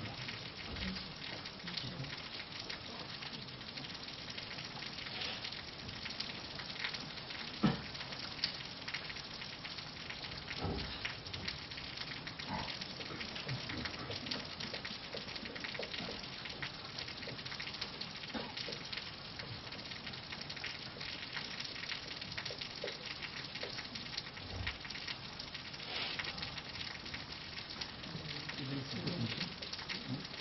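Marker pen writing on a whiteboard, a faint scratchy sound of the tip stroking the board, after a duster wipes it near the start. A few short knocks stand out, the loudest about a quarter of the way in.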